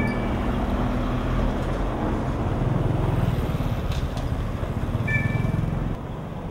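Street traffic: car engines passing at low speed over steady road noise, the low engine hum growing stronger in the middle. A brief high chirp sounds about five seconds in.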